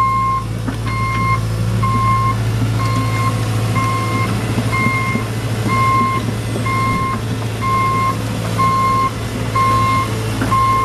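John Deere 135C excavator's Isuzu four-cylinder diesel running steadily while its motion alarm beeps about once a second.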